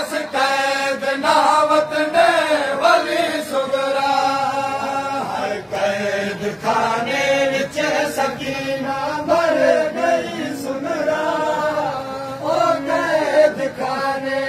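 A group of men chanting a noha, a Shia mourning lament, in unison. Sharp slaps, likely from matam (chest-beating), break in now and then.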